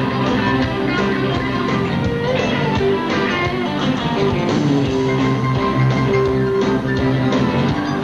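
Live rock band playing an instrumental passage led by guitar, with a steady beat.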